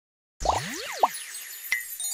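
Silence, then a cartoon logo sound effect: a springy boing that sweeps up and back down in pitch, over a high sparkly shimmer, with a click and then a short ding near the end.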